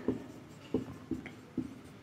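Marker pen writing on a whiteboard: several short, faint strokes.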